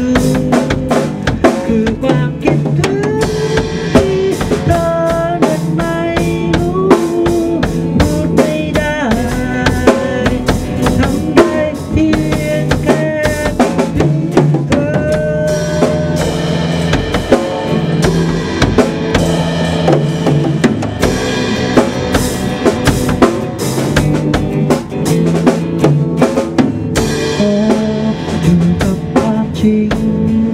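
A drum kit and an electric guitar playing a song together live, the drums keeping a steady beat with kick, snare and cymbals while held, bending guitar notes carry the melody.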